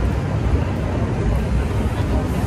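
Steady low rumble of outdoor background noise, loud and deep with an uneven, fluttering character.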